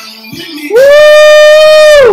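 A man's loud, high "whoooo" yell: one long held note of about a second and a half that starts under a moment of quiet music and drops in pitch as it ends.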